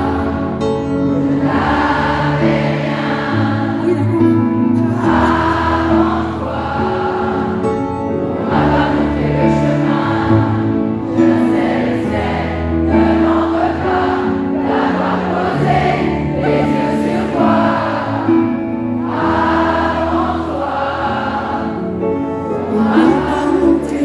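A large arena crowd singing the chorus together like a choir, over sustained keyboard and bass accompaniment.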